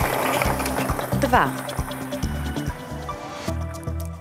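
Background music over a steady rattling hiss of plastic lottery balls tumbling in a draw machine's clear mixing chamber. The hiss cuts off suddenly near the end.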